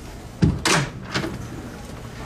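An office door shutting with a single solid thud about half a second in, followed by a few fainter knocks.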